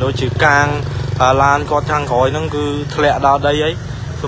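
A person talking continuously over a steady low engine hum.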